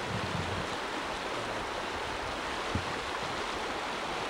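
Floodwater rushing steadily down a flood-swollen stream.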